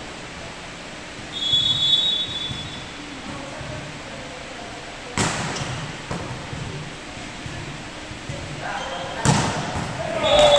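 A referee's whistle gives one short steady blast about a second and a half in. Then a volleyball is struck hard twice, about five seconds in and again near the end, each hit echoing around the gym hall, with players' voices around the second hit.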